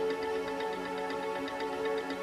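Background music: sustained synth-like tones over a fast, steady ticking beat.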